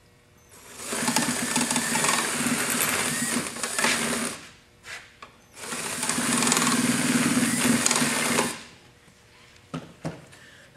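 Power drill with a 1-1/8 inch paddle bit boring burner holes through a gas forge's new liner. It runs twice, a few seconds each time with a short pause between, once for each hole.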